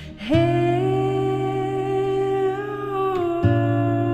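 A man's voice singing long wordless held notes over acoustic guitar. One note is held for about three seconds, then a new note begins with a guitar strum.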